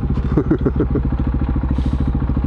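Motorcycle engine idling steadily with a rapid, even pulse while the bike stands still.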